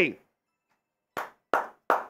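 A man clapping his hands: three sharp claps about a third of a second apart, starting about a second in, the first one fainter.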